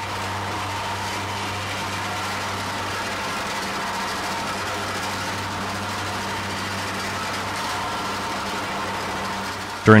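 Gasoline-engine vibratory plate compactor running steadily over concrete pavers during initial compaction, which begins the interlock between the pavers before the joints are filled with sand. It makes an even drone with a low hum throughout.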